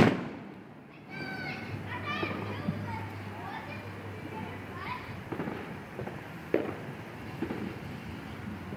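A single aerial firework shell bursts with a loud bang, its echo dying away over about a second.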